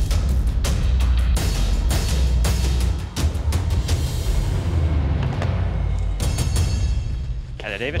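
Dramatic background music with repeated heavy drum hits over a deep low pulse. A man's voice comes in near the end.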